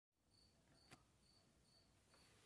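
Near silence with faint cricket chirping: short, evenly spaced chirps about two to three times a second, and one faint click about a second in.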